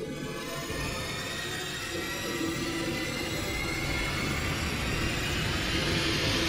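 A dense, ominous drone in the film's score, swelling steadily louder and rising slightly in pitch.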